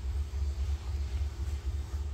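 A steady low background rumble with a faint hum, with no distinct event.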